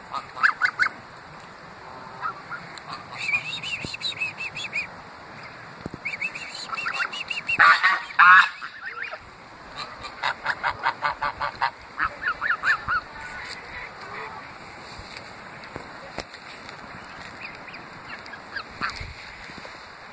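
Greylag geese honking close by, in short repeated calls. The loudest honks come about eight seconds in, followed by a quick run of calls, several a second, before they thin out near the end.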